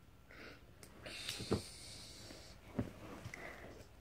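A child's breathy hissing, with two sharp knocks about a second and a half and nearly three seconds in.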